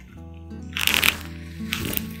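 Background music with sustained held notes, over which a tussar silk sari rustles and swishes as it is unfolded and spread out. The louder swish comes about a second in, and a smaller one near the end.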